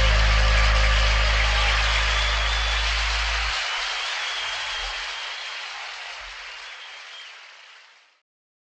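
The closing low note of an Oriente HO-38 upright bass held and then stopped short about three and a half seconds in. Under and after it, the backing track's final hissy chord fades slowly away and cuts off at the end.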